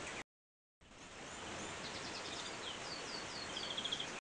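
Caged finches chirping faintly over a steady hiss: a few short falling calls and a quick trill near the end. The sound cuts out completely for about half a second just after the start.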